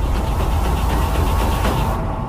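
Film battle soundtrack: a steady, heavy rumble with music over it.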